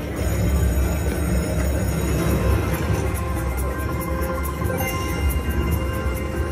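Video slot machine's bonus-round music playing steadily as the free-game feature starts and the reels spin.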